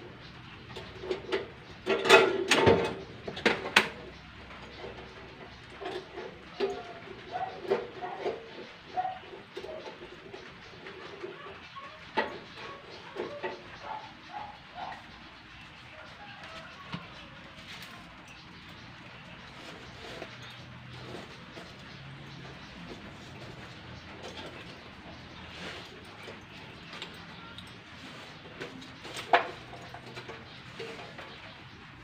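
Wire fish-grilling baskets clinking and clattering on a charcoal grill as they are handled, loudest a couple of seconds in and again just before the end. Birds coo in short repeated notes behind it through the first half.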